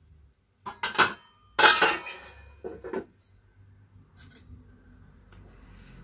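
Metal cookware clattering: a few sharp clanks with a short ring in the first three seconds, the loudest about one and a half seconds in, as the pot of simmering kocheh is handled.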